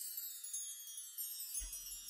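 Wind chimes ringing in a high, shimmering wash that slowly fades. Near the end a low room hum comes in.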